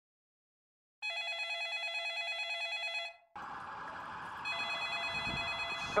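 Electronic telephone ringer giving two warbling rings: the first about a second in, lasting some two seconds, the second fainter over a steady hiss. Near the end an answering machine picks up the call.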